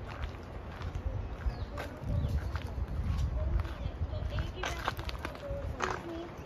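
Footsteps on a dirt path amid scattered voices of people walking nearby, with a low rumble through the middle of the clip.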